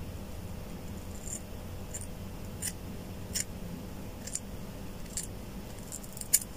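Scissors snipping through a lock of hair held between the fingers: about six quiet snips, roughly a second apart.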